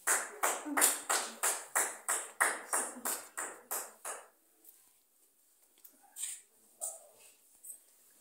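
Hand clapping in a steady rhythm, about three claps a second, stopping about four seconds in, followed by a few scattered claps.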